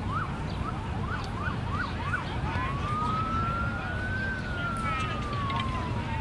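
Emergency vehicle siren yelping in quick up-and-down sweeps for the first couple of seconds, then switching to a slow wail that rises for about two seconds and falls away. A steady low rumble lies underneath.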